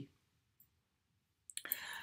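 Near silence: room tone, then near the end a couple of small mouth clicks and a short breath in.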